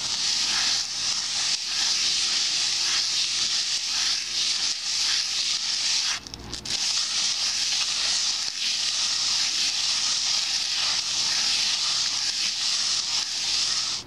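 Hand-held abrasive scrubbing across the inside of a cast iron skillet, sanding the rough cast surface smooth: a steady, loud, hissing rasp that breaks off for a moment about six seconds in.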